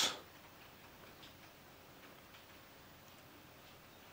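A few faint, light ticks of fingers handling the plastic case of a mini PC, over quiet room tone.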